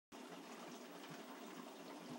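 Faint, steady rush of water running into a flooded window well, overflow from clogged or failing gutters.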